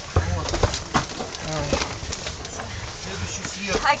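Indistinct voices in a train carriage corridor, with a few sharp knocks and rustles from bags being carried, over a low rumble.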